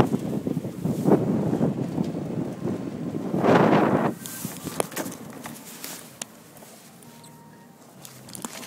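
Wind noise and handling rustle on the microphone of a camera held while riding an electric bike, with louder gusts about a second in and around three and a half seconds in. After that it drops lower, with a few sharp clicks.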